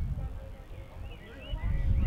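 Wind gusting on the microphone as a low, uneven rumble, with high, warbling chirps from about a second in.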